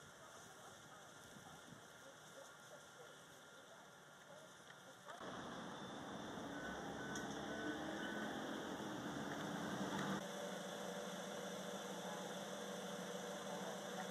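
Faint outdoor background noise, then about five seconds in a steady low mechanical hum with a few held tones comes in suddenly and runs on, with a brief change about ten seconds in.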